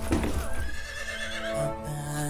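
A horse neighs near the start, a gliding call lasting about a second, over the film's music.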